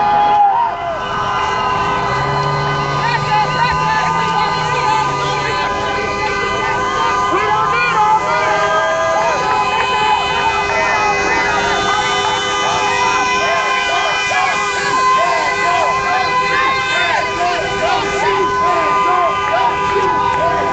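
Vehicle horns held in long, steady blasts at several pitches at once, sounding together over the voices of a street crowd.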